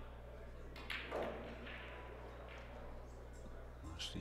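A pool shot: the cue tip clicks sharply against the cue ball about a second in, quickly followed by the fuller knock of the cue ball striking an object ball (Predator Arcos II balls), then a few faint knocks as the balls roll on.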